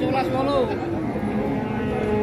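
Cow mooing: one low, drawn-out, steady call that starts about a second in.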